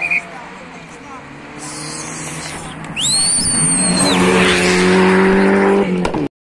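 Rally car engine at high revs approaching on gravel, growing much louder about halfway through and holding a steady, hard-running note as it passes close by. A brief high whistle sounds as it arrives.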